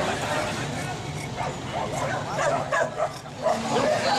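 Dogs barking in short, sharp calls over the chatter of a crowd.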